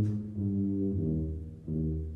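Solo tuba playing a slow melody low in its range, a string of separate held notes of about half a second each.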